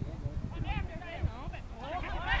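Several voices of football players and onlookers shouting and calling out over one another, with low rumbling thumps underneath.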